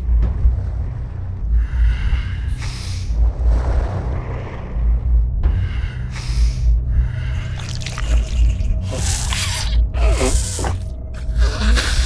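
Film soundtrack music with a low thudding pulse about once a second, overlaid with repeated breathy, gasp-like sound effects. The gasps come quicker and louder near the end.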